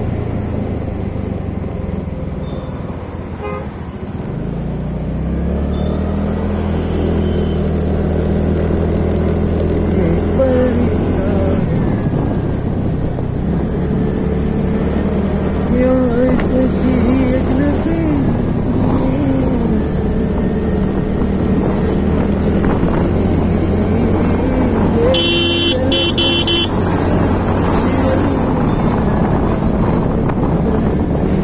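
TVS Ntorq 125 scooter's single-cylinder engine running at about 40 km/h, its note rising a few seconds in as it picks up speed, with traffic around it. A vehicle horn sounds briefly about 25 seconds in.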